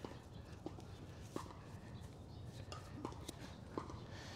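Faint handling sounds of braided climbing rope as a figure-eight stopper knot is worked snug: a low rustle with a few soft, irregular clicks.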